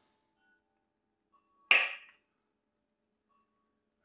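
A serving spoon tapping once, sharply, against a dish a little under two seconds in, dying away within half a second; otherwise silence.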